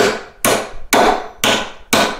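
Claw hammer driving a three-and-a-half-inch nail into an old rough-cut two-by-eight floor joist: about five sharp blows, roughly two a second, each with a short ringing decay.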